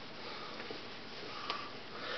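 Faint steady room hiss with a few soft clicks and rustles as hand puppets are lifted into view.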